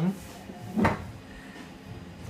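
A single sharp knock a little under a second in, over low room noise.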